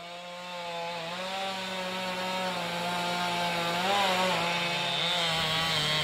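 Chainsaw running at high revs, its pitch holding steady with slight rises and dips, getting gradually louder.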